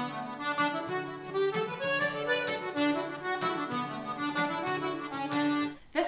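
A lively traditional-style tune on accordion, melody notes moving quickly over a held bass, cutting off suddenly just before the end.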